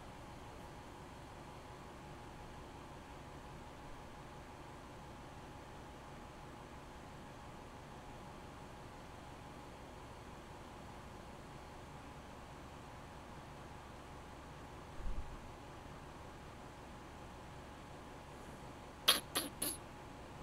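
Faint, steady hiss of a quiet room and microphone, with a soft low thump about fifteen seconds in and three or four quick computer keyboard clicks near the end.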